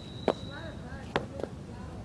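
Footsteps on a concrete sidewalk: sharp clicks coming roughly in pairs, about a second apart.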